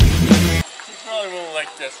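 Loud rock music with a heavy drum beat that cuts off suddenly about half a second in, then a man's voice exclaiming.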